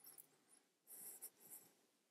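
Near silence: room tone with a few faint, brief hissy rustles about a second in.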